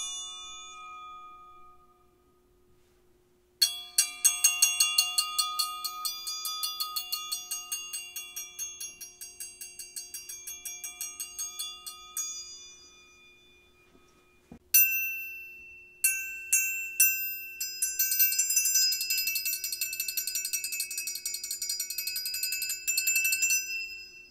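Orchestral triangle struck with a metal beater while held over and dipped into a tub of water, ringing bright and high. The first strike rings out, then comes a long rapid tremolo roll, a few single strokes, and a second fast roll that cuts off abruptly near the end.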